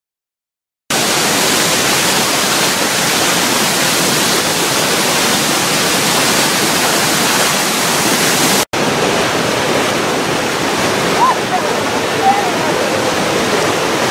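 Rushing water of a waterfall and river rapids, a loud, steady roar of falling and churning water that starts about a second in. It breaks off for an instant about two-thirds of the way through, then carries on.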